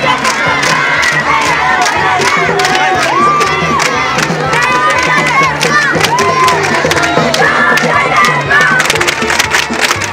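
A group of girls chanting and shouting together while beating round handheld plastic percussion instruments, with many sharp strikes and a dense crowd around them.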